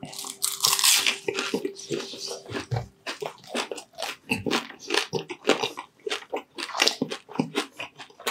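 Crunchy bite into crispy deep-fried chicharon bulaklak (pork mesentery), loudest in the first second or so. It is followed by a steady run of close-miked crackling chews.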